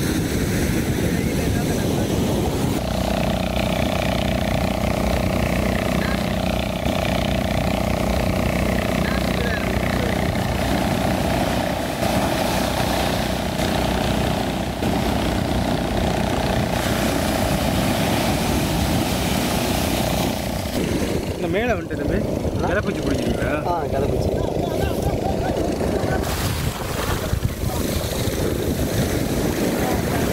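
Loud, steady rushing of wind on the microphone mixed with breaking surf. A steady hum sits under it for most of the first two-thirds, and faint voices come in later.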